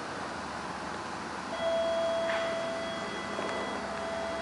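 Old ASEA traction elevator at a landing: a steady high tone with fainter overtones starts abruptly about a second and a half in and holds, with a few faint clicks over a low room hum.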